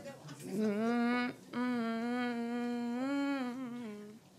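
A young woman humming a tune into a handheld microphone: a short rising phrase, a brief break about a second and a half in, then one long held note.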